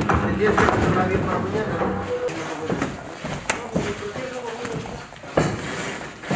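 Everlast boxing gloves striking focus mitts: a few sharp smacks spread through, with voices in the background.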